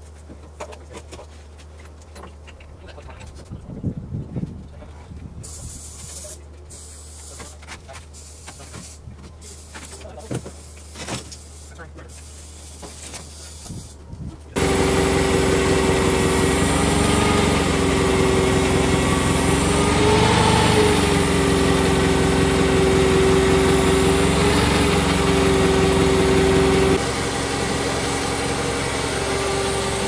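Faint knocks and clatter as loading ramps are set at the bus's rear floor. Then, about halfway through, a forklift engine comes in abruptly, running loudly with a steady hum whose pitch dips and rises a few times, and it drops to a lower level near the end.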